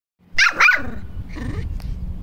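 A puppy barking: two quick high-pitched barks close together about half a second in, then a softer third bark.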